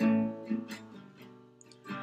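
Acoustic guitar strumming: a chord struck at the start rings out and fades, a lighter strum comes about halfway through, and another chord is struck just before the end.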